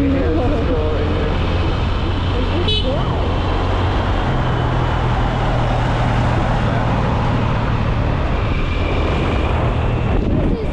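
Steady engine, tyre and wind noise of a car driving along a highway. A brief high-pitched toot sounds about three seconds in.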